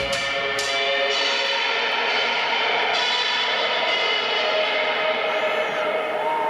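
A live rock band's closing chord ringing out through the hall. A couple of cymbal crashes come in the first half-second, then the chord is held on steadily and the drums drop away.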